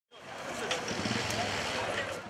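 Outdoor ambience fading in: a steady engine hum with indistinct voices in the background.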